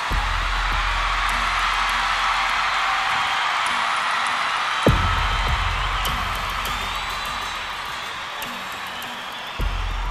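Live concert music: deep, sustained bass hits about every five seconds over a steady hissing wash of crowd noise, with no singing.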